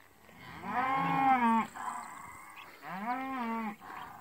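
Cattle mooing twice, from cow-calf pairs being driven: a long call that rises and falls in pitch about half a second in, then a shorter, quieter one near the end.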